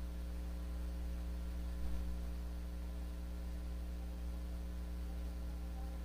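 Steady low electrical hum, unchanging throughout, with no singing or music over it.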